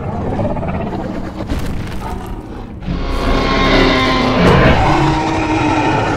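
Film sound effects of two large theropod dinosaurs, a Giganotosaurus and a Tyrannosaurus rex, in a face-off: low rumbling growls, then a long pitched roar starting about halfway through.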